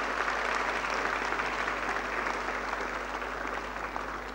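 An audience applauding, many hands clapping steadily and easing off a little toward the end.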